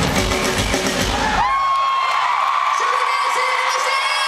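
A live rock band playing at full volume with drums, stopping abruptly about a second and a half in on the song's final hit. A concert crowd then screams and cheers, with long high whoops rising and falling.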